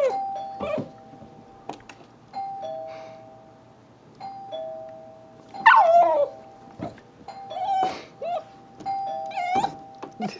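Two-tone doorbell chime sounding ding-dong again and again, about every two seconds. A pitbull puppy answers with high-pitched barks, loudest about six seconds in, and barks twice more near the end.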